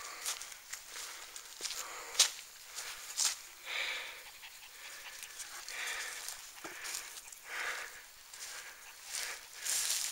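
Footsteps crunching through dry leaf litter and brushing through undergrowth, with twigs snapping and a sharp crack about two seconds in. Panting breaths come in irregularly throughout.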